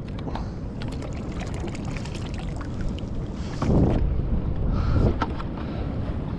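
Water moving around a kayak, with wind on the microphone and scattered small knocks, and two louder rushes of noise just past the middle.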